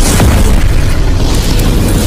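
Cinematic boom sound effect for a logo reveal: a loud explosion-like rumble that hits suddenly and holds, with music under it.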